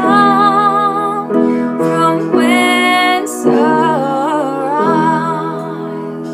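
A woman singing a slow, tender song with vibrato over sustained instrumental accompaniment chords.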